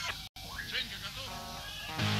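Pause between songs on a live rock concert recording: a brief cut to silence at the track join, then voices and a drawn-out, wavering shout over hall ambience.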